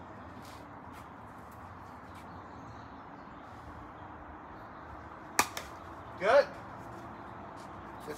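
A single sharp click of a golf club striking a ball off a hitting mat, over a steady low background hum. A short voice sound follows about a second later.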